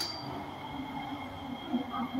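MRT train car running along the track: a steady low rumble with a thin, steady high-pitched whine from the wheels on the rails.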